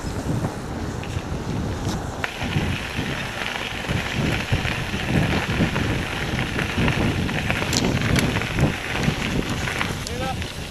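Wind buffeting the microphone of a camera on a moving mountain bike, over the rumble and rattle of the bike rolling; a hissy layer joins about two seconds in and runs on.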